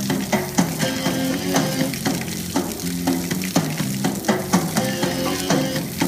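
Water splashing in a hissing spray over a waterproof motorcycle radio, which keeps playing a song with steady held notes and a regular beat.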